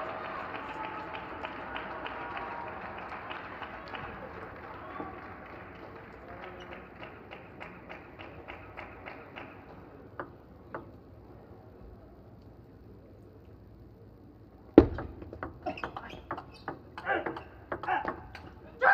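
Arena crowd noise with clapping that fades away over several seconds, leaving near quiet. About three-quarters of the way in comes a loud sharp click and then a quick run of clicks: a table tennis ball bouncing and being struck on the table and rackets.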